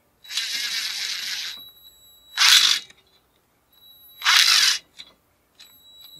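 Cordless DeWalt impact driver driving a square-drive finish screw through a post cover into wood: a run of about a second and a half with a steady high whine, then two short, louder bursts about two seconds apart.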